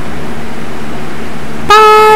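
Steady hiss with a low hum in the background. Near the end a woman's voice starts a long, high "Bye!" held on one note.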